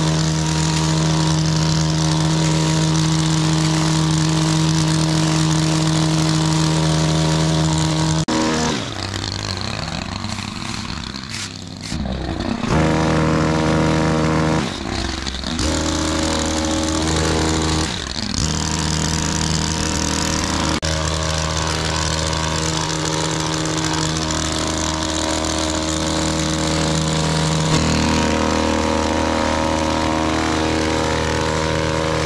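Stihl KM131 petrol combi-engine driving a long-reach hedge trimmer attachment, running at high throttle with a steady note while the blades cut the hedge. The engine note drops and wavers for a few seconds about a third of the way in, and again briefly twice after that, then holds steady.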